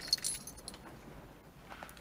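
A brief metallic jingle of small clinks and ringing in the first half-second, then low room noise.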